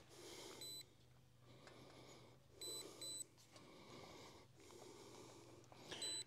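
Faint, short, high-pitched electronic beeps from the RUKO F11GIM2 drone's remote controller as it powers on and waits to connect to the drone: one beep about half a second in, then two close together near the middle.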